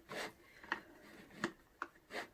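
Faint plastic rubbing and clicking as a side brush is worked onto its slot on the underside of an Ultenic D5s Pro robot vacuum: a brief scrape near the start, then three short clicks.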